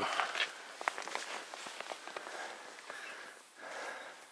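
Hiker's footsteps climbing a rocky dirt trail: irregular light crunches and taps of boots on soil, roots and stone.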